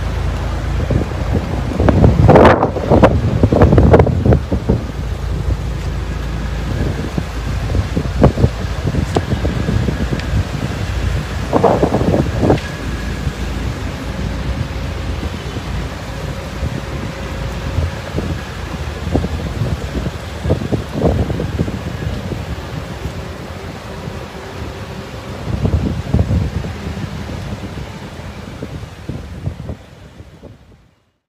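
Wind buffeting an outdoor phone microphone: a steady low rumble with several louder gusts.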